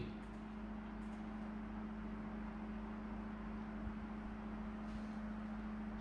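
Quiet, steady low mechanical hum: room tone.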